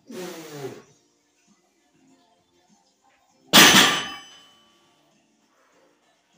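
A short grunt with falling pitch at lockout. About three and a half seconds in, a 435-pound loaded barbell lands on the floor with a sudden clang of the plates that rings on for about a second.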